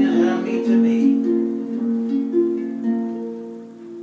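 Concert pedal harp played solo: a slow run of plucked notes, each left to ring on, the playing growing softer near the end.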